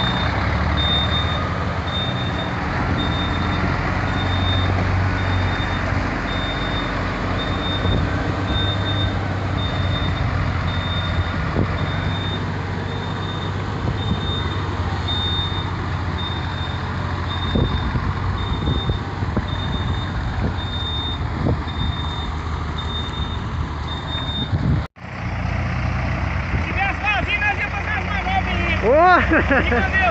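Scania truck's diesel engine running as the loaded tractor-trailer moves off slowly, with a high electronic warning beep repeating at a steady pace. The beeping stops abruptly near the end, while the engine keeps running.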